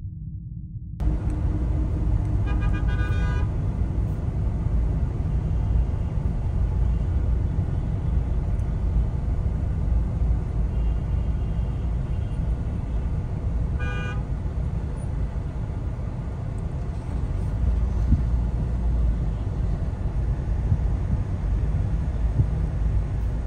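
Busy city road traffic: a steady low rumble of engines and tyres coming in about a second in. A vehicle horn honks for about a second shortly after, and another short honk comes about two-thirds of the way through.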